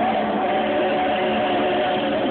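Live band music with several women's voices singing held notes into microphones.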